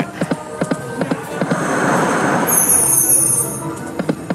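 Dancing Drums slot machine sound effects: electronic game music over a run of quick clicks as the reels spin and stop. A bright, high jingle sounds past the middle as a new spin is paid for and starts.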